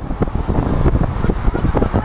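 Wind buffeting the microphone at a moving car's side window, mixed with road and traffic noise from the car driving along a city street.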